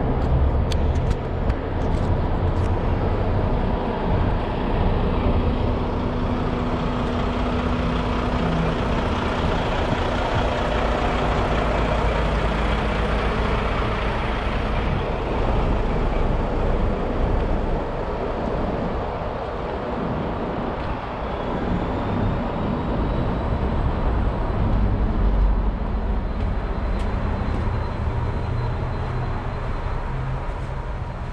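A vehicle engine idling, a low rumble with a steady hum, with a few sharp clicks in the first few seconds.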